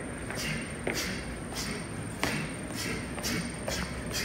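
Quick boxing footwork: sneakers shuffling and tapping on a wooden gym floor in a steady rhythm of about two steps a second, with a few sharper knocks.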